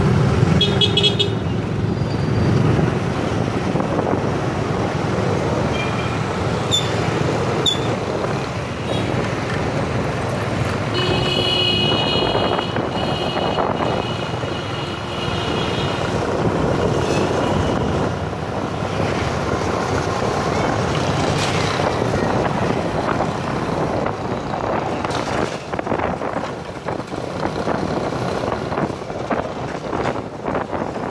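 Motorbike traffic heard from a moving motorbike on a busy city street: steady engine and road noise, with a short horn toot just after the start and a long, steady horn blast from about eleven to sixteen seconds in.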